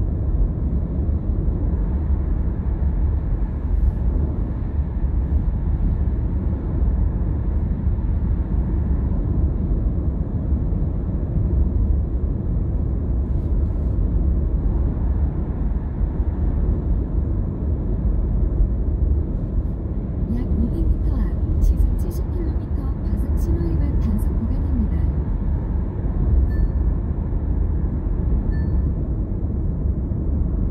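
Steady low rumble of tyre and road noise with engine drone, heard from inside a car cruising at road speed. A few faint clicks come about two-thirds of the way through.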